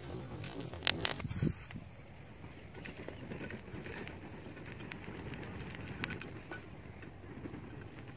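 A small fire of dry straw crackling with sharp snaps in the first second or so while it is fanned with a metal pot lid, then a low rushing of air and only the odd faint tick as the flames die down.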